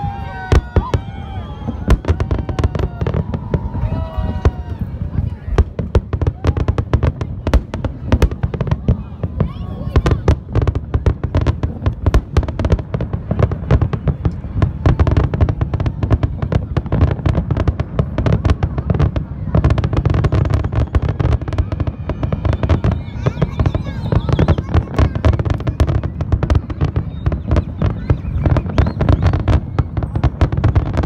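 Aerial fireworks display: a rapid, unbroken string of shell bursts and crackling bangs over a continuous low rumble, busiest in the second half.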